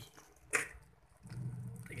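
Noodles being stirred into raw beaten egg in a rice cooker's inner pot: quiet wet squishing, with one sharp click about half a second in.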